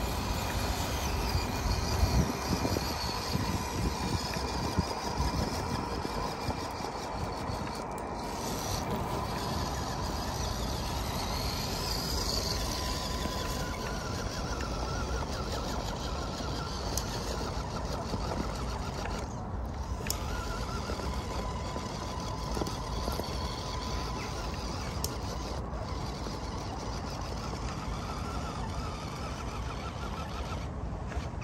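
Electric drive motor and gearbox of an Amewi Gallop 2 RC crawler whining as it drives over soil and climbs a dirt slope, with a faint steady high whine running under the noise.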